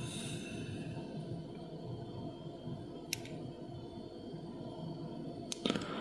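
Faint handling of a brass lock cylinder body and a flat metal pin-holding tool: one small sharp click about three seconds in and a few light clicks near the end, over low steady room noise.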